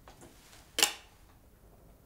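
Quiet room with a single brief, sharp click a little under a second in.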